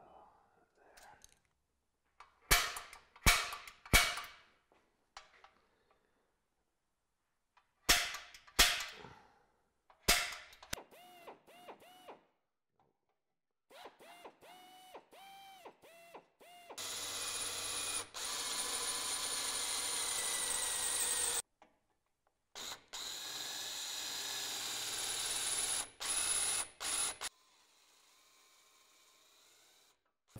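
Cordless drill boring holes through the hard metal bumper reinforcement bar: a few short trigger bursts with the motor speeding up and slowing, then two long runs of drilling of about four seconds each, the second growing louder. Several sharp knocks come first.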